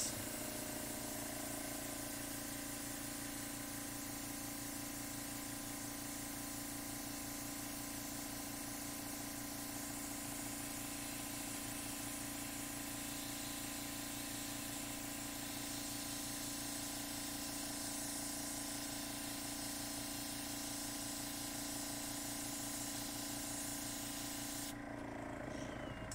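Small-cup, gravity-fed PointZero airbrush spraying watered-down acrylic paint: a steady hiss of air with a steady hum underneath. The spray cuts off about a second before the end.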